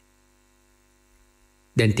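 Near silence with a faint steady hum during a pause in speech, then a man's voice resumes near the end.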